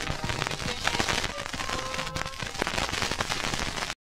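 The tail of a 1980s Ukwuani gospel song played back from a vinyl LP. A few held notes play low under dense crackle and clicks of record surface noise, and the sound cuts off just before the end.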